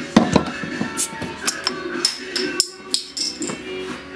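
Glass bottle being opened on a wall-mounted metal bottle opener: a sharp pop as the cap is levered off just after the start, then a run of light clinks and knocks.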